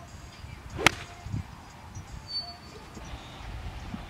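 Golf wedge striking the ball on a chip shot: one sharp click about a second in.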